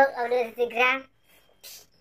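A young man's voice speaking for about a second, then a short pause with a brief hiss near the end.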